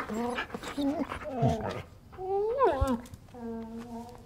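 Samoyed dog whining at a closed door: a few pitched whimpers, with a rising-and-falling whine about two and a half seconds in and a shorter, steadier whine near the end. The dog is anxious.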